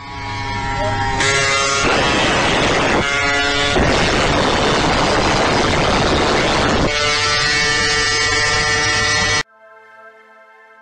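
Small gasoline engine on a motorized bicycle buzzing steadily, heard from a car driving alongside, with a loud rushing noise over the microphone through the middle. The sound cuts off suddenly near the end.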